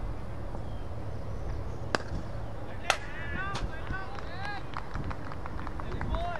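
Two sharp knocks about a second apart on a cricket field, followed by a run of short, distant shouted calls from the players.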